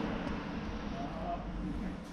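A faint voice in the background over a low, steady rumble.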